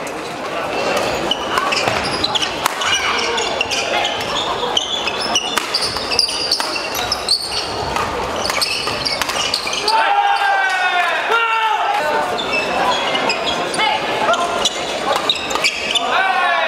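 Badminton doubles rally echoing in a large hall: repeated sharp racket strikes on the shuttlecock and short high squeaks of sneakers on the court floor, with players' voices.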